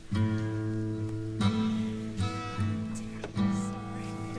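Acoustic guitar starting a song with a few strummed chords, each left to ring, with a fresh chord about every second.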